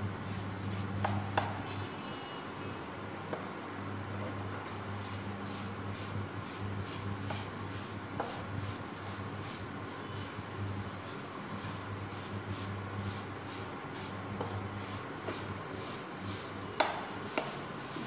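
Spatula repeatedly stirring and scraping ground urad dal stuffing in a nonstick pan as it is roasted with spices, with a light sizzle and a steady low hum from the induction cooktop. A sharper knock of the spatula on the pan comes near the end.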